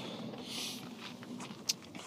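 Faint shuffling and rustling with a short hiss about half a second in and a sharp click near the end.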